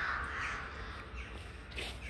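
Birds calling in the background, a harsh rasping call loudest in the first half second and then fading, with a short sharp click near the end.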